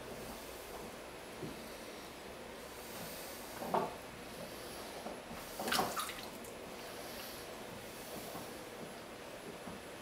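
Wet clay rubbing and squelching under a potter's hands on a spinning potter's wheel, with two brief louder sounds about four and six seconds in.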